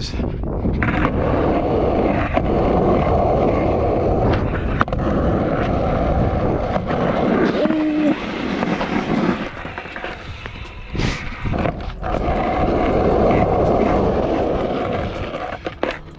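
Skateboard wheels rolling over rough concrete, a steady, loud rumble, broken by a few sharp clacks of the board on the concrete. The rumble eases off a little past halfway and again near the end.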